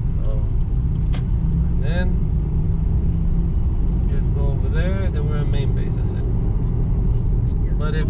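Car driving along a road, heard from inside the cabin: a steady low rumble of engine and tyres.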